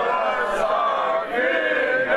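A crowd of mostly male voices singing a birthday song together in unison, with long held notes.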